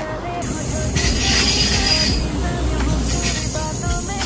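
A KTM Intercity diesel multiple unit passes close by on the adjacent track, with a steady low rumble of wheels on rail and a burst of rail hiss about a second in.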